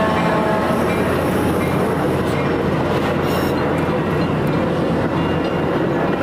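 Metra diesel locomotive passing close, its engine note fading as it goes by, followed by bilevel passenger coaches rolling past with a loud, steady rush of wheels on rail.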